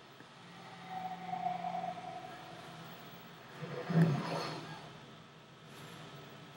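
Film soundtrack with no dialogue: a held humming tone for the first couple of seconds, then a louder swell of sound about four seconds in that fades away.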